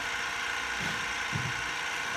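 TRS21 active recovery pump running steadily, pumping butane solvent through a closed-loop extraction system against about 10 psi, held back by a needle valve.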